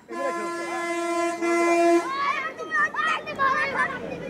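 A vehicle horn sounds one steady, unwavering note for about two seconds, then stops, followed by children's high-pitched shouting.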